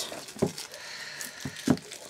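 Hands peeling clear plastic shrink-wrap off a small cardboard box: faint rustling of the film, with two light knocks against the box, about half a second in and near the end.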